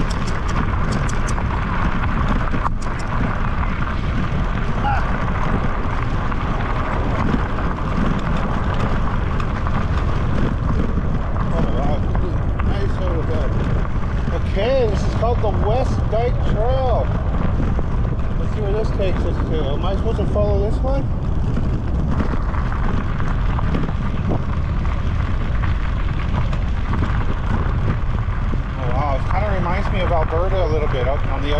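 Electric bike rolling along a gravel trail: a steady rumble of tyres on loose gravel mixed with wind on the microphone.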